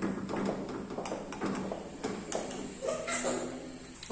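A metal spoon scraping and tapping against a non-stick frying pan, spreading tapioca flour into an even layer: a run of light, irregular clicks.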